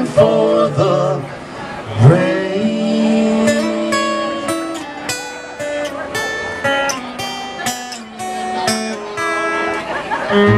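Live acoustic country band playing an instrumental passage: strummed acoustic guitar with upright bass and held melody notes over it.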